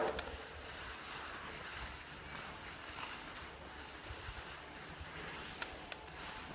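Steady rushing noise of wind on the microphone and skis gliding over packed snow, with a sharp click just after the start and another near the end.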